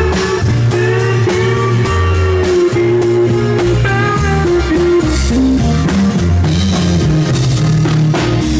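Live rock band playing an instrumental passage: electric and acoustic guitars, keyboard, bass and a drum kit, with the cymbals keeping a steady beat of about four strokes a second under held melodic notes.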